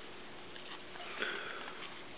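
Trading cards being thumbed through by hand: faint sliding and light ticks of card stock, with a short sniff about a second in.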